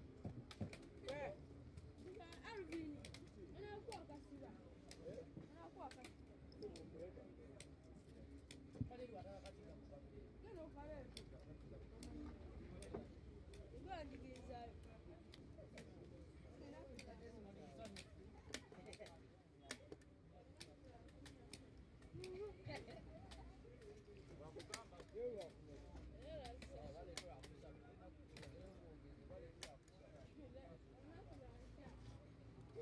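Quiet, irregular sharp clicks from upholstery work as a leatherette cover is fastened to a wooden chair back, with faint voices in the background.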